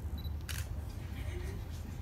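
A camera shutter clicks once, a short sharp click about a quarter of the way in, over a steady low room hum.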